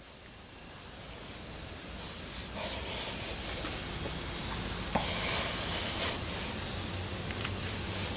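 Air hissing out of a punctured tubeless car tyre through the reamed screw hole while a plug insertion tool is worked into it. The hiss swells over a couple of seconds, is strongest a little past the middle, then eases.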